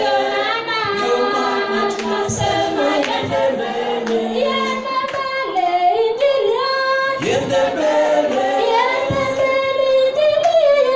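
A group of voices singing together as a choir, several melodic lines weaving through the whole stretch.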